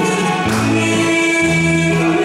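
Harmonica playing a melody in long held notes, amplified through a microphone, over a recorded accompaniment whose low notes change about every second.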